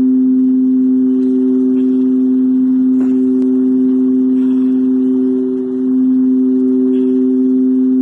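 A loud, steady drone of two held tones that does not fade, with a brief slight dip about five and a half seconds in.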